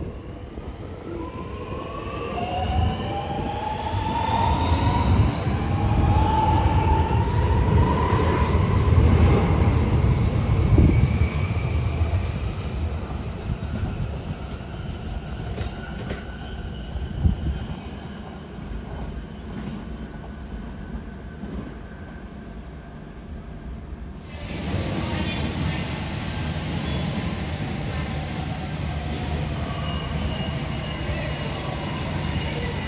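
Sydney Metro Alstom Metropolis driverless metro train pulling away from the platform, the whine of its electric traction drive rising in pitch in several tones as it accelerates. The sound builds over about ten seconds and then fades as the train leaves. Near the end it gives way abruptly to a steadier background of station and train noise.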